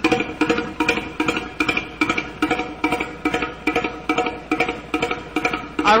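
1912 Stanley steam-car engine, a twin-cylinder double-acting unit, running on compressed air at 80 psi instead of its usual 650 psi steam: a quick, even beat of exhaust puffs and knocks, about five a second, over a steady ringing tone.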